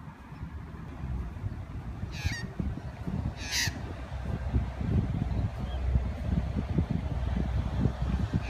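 Two short calls from Australian magpies, a little over a second apart, over a low rumble of wind on the microphone that grows louder.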